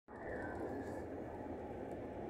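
Steady running noise of a passenger train at speed, a continuous rumble and rush heard from inside the carriage.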